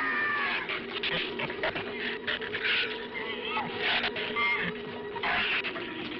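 Animal squealing and snarling in short, irregular shrill bursts, the film's giant-shrew sound effect, over a low held note of music.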